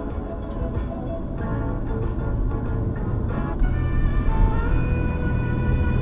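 Music with guitar playing on a car radio inside the cabin, over the steady low rumble of the car driving.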